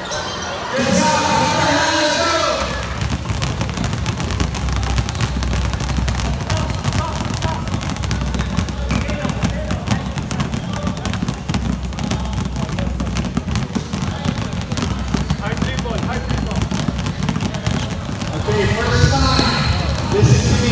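Dozens of basketballs dribbled at once on a gym floor: a dense, unbroken clatter of bounces. Voices are heard over it at the start and again near the end.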